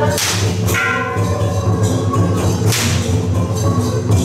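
Thick rope ritual whip cracked twice, about two and a half seconds apart. This is the whip-cracking of a Taiwanese temple procession, done to drive off evil. Steady background music runs underneath.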